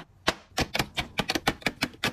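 Makeup bottles and tubes clacking against a clear plastic organizer bin as they are set in: after a brief lull with a single click, a rapid run of light clacks, about eight a second.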